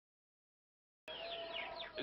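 Silence for about the first second, then the garden soundtrack cuts in abruptly with birds calling: short, high, falling chirps.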